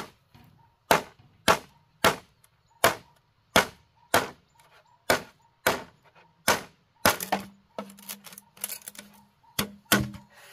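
Machete chopping into a green bamboo pole: about ten sharp, evenly spaced strikes, a little over half a second apart. In the last few seconds the strikes give way to a quicker run of smaller cracks.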